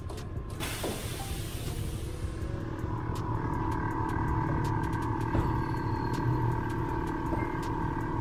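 Air suspension on a Lexus IS letting air out of its bags with a hiss that fades over about two seconds as the car lowers. From about two and a half seconds in, the bags fill from the air tank with a steady, tone-like airflow sound as the car rises, with scattered valve clicks.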